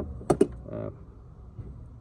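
Two sharp knocks in quick succession, a hard plastic angle grinder being set down in a plastic toolbox.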